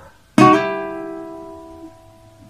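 Requinto guitar: a single pluck on the second and third strings about a third of a second in, slurred with a hammer-on just after, so the one stroke sounds like two notes. The notes then ring and fade slowly.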